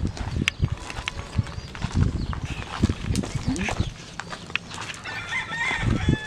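Footsteps and bumps of the camera being carried while walking through brush, with a pitched animal call held for about a second near the end.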